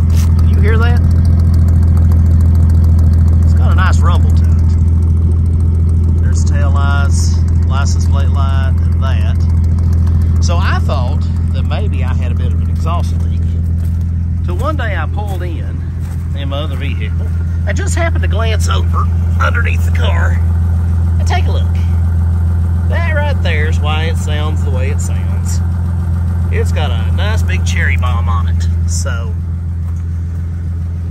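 1950 Dodge Coronet's flathead straight-six idling, heard at the tailpipe: a steady, low exhaust rumble, described as a nice rumble that is not obnoxious.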